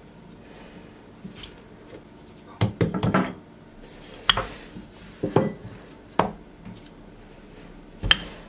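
Wooden rolling pin handled on a worktop: a quick cluster of knocks and clatter about two and a half seconds in, then single sharp knocks about four, five and six seconds in.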